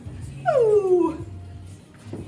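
A single high-pitched cry that slides down in pitch by about an octave, lasting under a second, with background music underneath.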